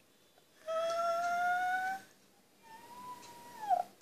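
Two long, high-pitched whining calls from a voice: the first loud and slowly rising in pitch, the second quieter and higher, dipping down at its end.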